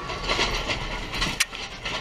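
A towed crop-spraying rig rolling past over dry ground: an uneven mechanical rattle and hiss, with a sharp click about one and a half seconds in.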